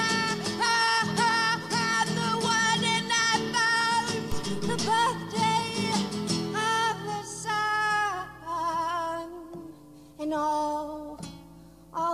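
A woman singing live with a wide, wavering vibrato over acoustic guitar. In the last few seconds it turns quieter and sparser, with held notes and short breaks.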